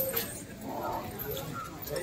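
Background voices of people talking, with a few short clicks near the start.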